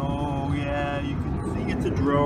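A voice holding long sung or chanted notes over a steady low rumble.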